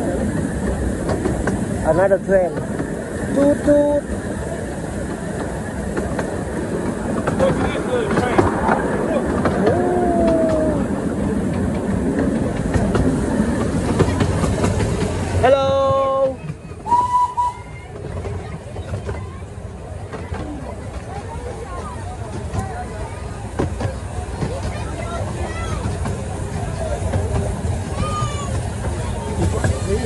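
Miniature railway train running along its track, a steady rumble of open carriages rolling over the rails. About halfway through, the rumble becomes a little quieter as the carriages are heard rolling past rather than from on board.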